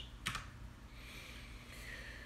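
Quiet typing on a computer keyboard: a sharp key click about a third of a second in, then soft, light keystrokes.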